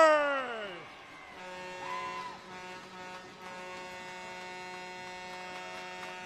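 A commentator's drawn-out shout at a goal fades out in the first second. Then, from about a second and a half in, a steady buzzing horn tone holds, the arena's goal horn sounding for the home team's goal.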